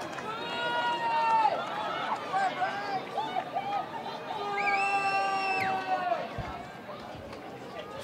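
Voices shouting across an open football ground as a free kick is lined up, with two long drawn-out calls, one about a second in and another about five seconds in.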